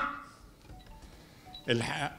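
A man's speech through a microphone trails off into a pause of about a second and a half, with room tone and a few faint, brief tones, then resumes near the end.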